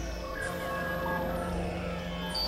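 Experimental synthesizer drone music: layered sustained tones over a deep low drone, with a few pitches sliding downward.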